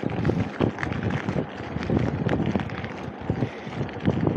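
Bicycle rolling over cracked asphalt, its frame and parts rattling in irregular clicks, with wind noise on the microphone.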